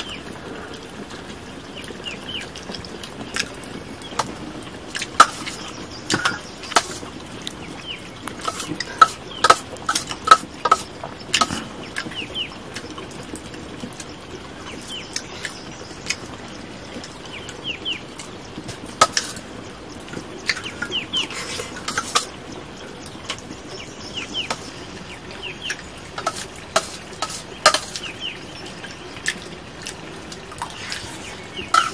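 A metal spoon clinking and scraping on a steel plate as a meal is eaten, in scattered sharp clicks at irregular intervals. Chickens cluck and chirp in the background.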